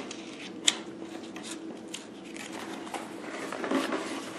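Paper pages of a newsletter in a binder being handled and turned, rustling, with one sharp snap of paper less than a second in. A faint steady hum runs underneath.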